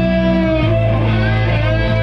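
Rock band playing: electric guitar over a sustained bass line, with the bass moving to a lower note about half a second in.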